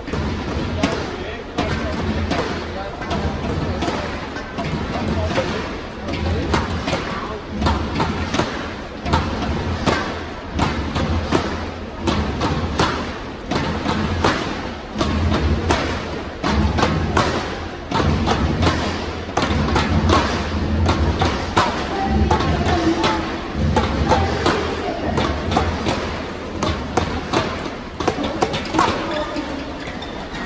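Sports hall ambience: music over the hall's speakers with a pulsing bass, voices, and a steady run of sharp thumps and claps all through.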